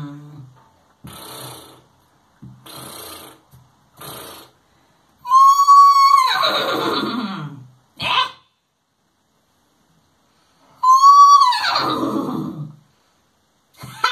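A horse whinnying twice, the loudest sounds here. Each call starts on a high held note and then falls away in a long quavering slide. It is preceded by three short, soft noisy bursts.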